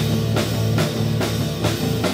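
Live rock band playing: electric guitar over a drum kit, with cymbal or snare hits a little over twice a second.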